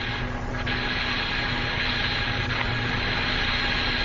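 Steady radio hiss with faint constant hum tones on the Friendship 7 air-to-ground radio channel, open but silent between transmissions.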